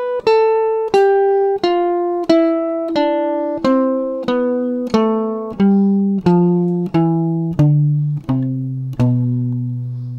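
Archtop guitar playing a C major scale one picked note at a time, descending steadily at about three notes every two seconds and ending on a longer held low note near the end.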